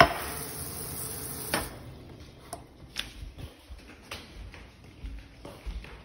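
A sharp clink of a glass, the loudest sound, as a kitchen tap runs; the running water stops with a knock about a second and a half in. Scattered light knocks and footsteps on a hard floor follow.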